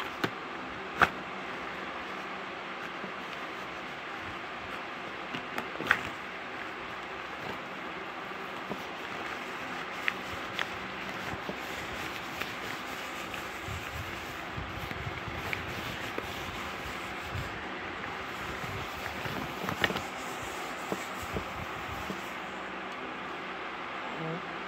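Steady background hiss and hum, with soft rustling and a few sharp taps and clicks, about half a dozen in all, as a fabric item and a plush toy are handled close to a phone microphone.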